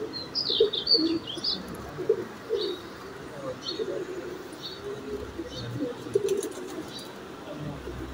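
Pigeons cooing in repeated short low calls, with small birds chirping high and quick, in a flurry in the first second and a half and then now and again.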